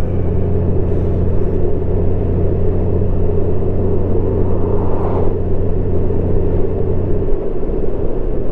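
Honda Gold Wing Tour DCT's flat-six engine humming steadily under a rumble of wind and road noise while cruising. The low hum drops away about seven seconds in.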